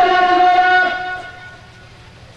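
A voice holding one long, steady chanted note, which fades out a little past a second in.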